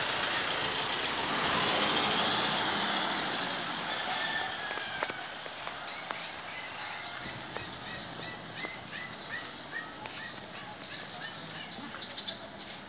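Street sound: a vehicle going by in the first few seconds, then a small bird chirping quickly and repeatedly through the second half, with a few faint clicks.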